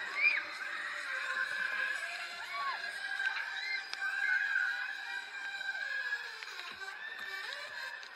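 Riders screaming and shouting on a Huss Booster ride, with fairground music beneath: a long wavering high scream with short rising-and-falling shrieks over it.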